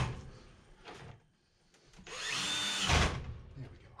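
Cordless drill-driver running for about a second, about two seconds in, driving a Phillips-head screw back into the coin mech's bottom bracket. A sharp click comes at the very start.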